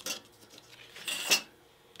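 Cardboard cutouts handled and set down on a sheet of paper on a tabletop: a light tap near the start and a short papery scrape about a second in.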